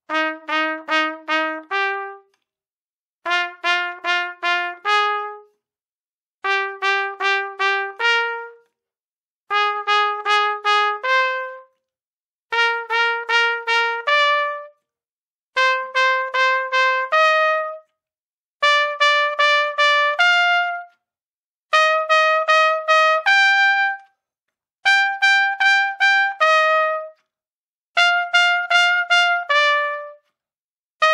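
Trumpet playing a slow, deliberate double-tonguing exercise: short groups of evenly repeated tongued notes on one pitch, each group ending on a higher held note, with a brief rest between groups. The groups climb step by step in pitch and dip near the end.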